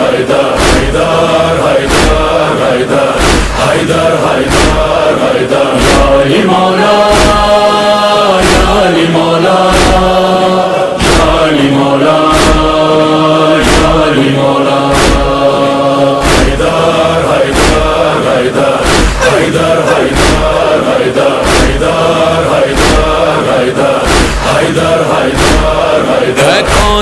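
Wordless musical break in a devotional Urdu song praising Ali: a steady drum beat, about three beats every two seconds, under sustained melodic lines.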